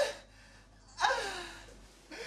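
A man's manic, gasping laughter: a burst cut off at the start, then about a second in a breathy cry that falls in pitch and trails off.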